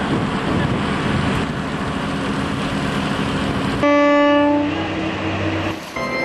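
Steady motor rumble on the water, then about four seconds in one loud horn blast lasting about a second, a boat's horn, trailing off into a weaker tone.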